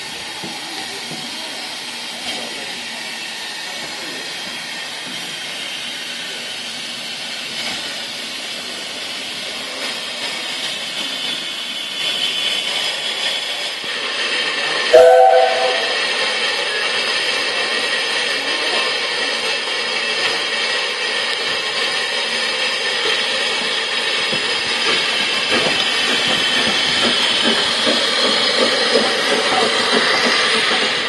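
SECR P class 0-6-0 tank engine No. 323 'Bluebell' approaching slowly, with a steady hiss of escaping steam that grows louder as it nears. About halfway through it gives one short toot on its whistle, the loudest sound. It then runs past close by with steam hissing from around its cylinders.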